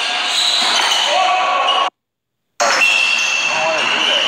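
Pickup basketball in a large gym: a ball bouncing on the hardwood and players' voices echoing around the hall. About two seconds in, the sound drops out to dead silence for under a second, then the same game sound resumes.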